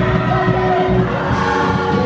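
Gospel praise singing led by a man on a handheld microphone, with a crowd singing along.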